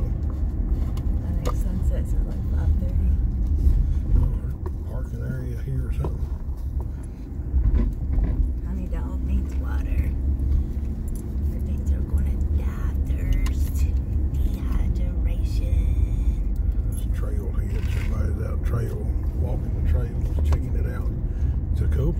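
Car driving along a paved road, heard from inside the cabin: a steady low rumble of tyres and engine, dipping briefly about seven seconds in.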